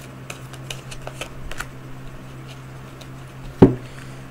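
Oracle cards being handled and drawn from the deck, with light papery clicks and taps of card stock, then one sharp knock a little over three and a half seconds in. A steady low hum runs underneath.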